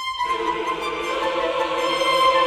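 Orchestral mockup played back from sample libraries: a virtual choir holding sustained notes in a counter-melody over strings, filling the gap while the main melody rests.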